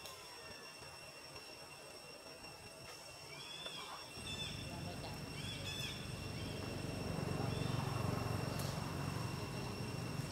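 Forest ambience: a steady high insect drone with short bird chirps scattered through it, and a low rumble that comes in about four seconds in and grows louder.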